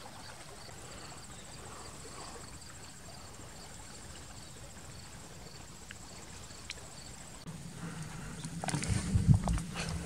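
Insects calling steadily: one fast, high trill and a second call chirping a few times a second. From about 7.5 s, rustling and knocks of someone pushing through dense brush grow louder toward the end.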